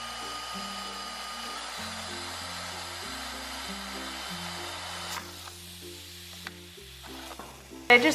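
Power drill with a quarter-inch bit boring a hole into PVC pipe, a steady whirring hiss that stops about five seconds in. Light background music plays underneath throughout.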